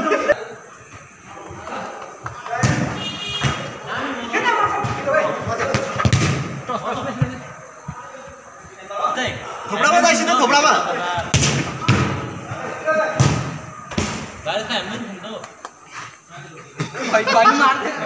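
Futsal ball kicked several times, each kick a sharp thud, over players' shouting.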